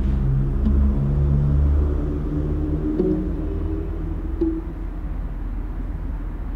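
A low, dark drone: a deep rumble under held low notes that change pitch slowly, one after another, with a few faint clicks.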